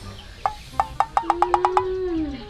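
Comedy sound effect: a quickening run of about ten short wood-block knocks, starting about half a second in, over a steady held tone that joins about a second in.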